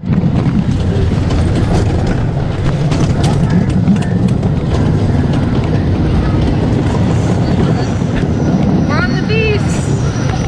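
The Beast wooden roller coaster train running along its track: a loud, steady rumble of the train with rushing air on the ride camera. A rider gives a short rising yell about nine seconds in.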